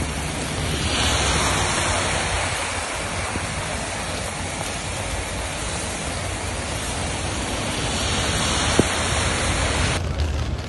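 Heavy rain pouring down onto a paved road: a dense, steady hiss of falling water and splashes that swells a little about a second in. A single brief click sounds near the end.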